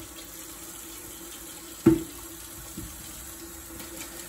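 Steady hiss of background noise with a faint hum. A single sharp click comes about two seconds in, with a fainter tick a second later.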